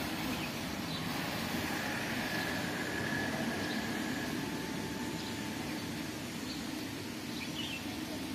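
A steady low rumble with faint, scattered bird chirps every couple of seconds.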